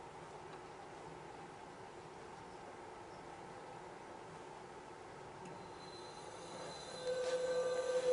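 MDG ICE fog machine with its fluid chamber being pressurized: a faint steady hum, then a steady pitched tone with a thin high whine over it sets in about seven seconds in and grows louder.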